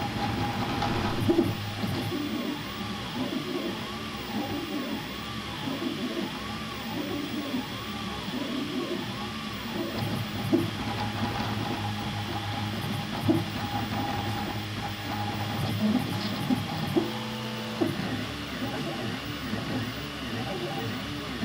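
Prusa i3 MK2 3D printer running a print: its stepper motors whine in shifting tones, with a high tone rising and falling about once a second as the print head moves back and forth.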